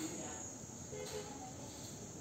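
Faint, steady high-pitched drone of insects.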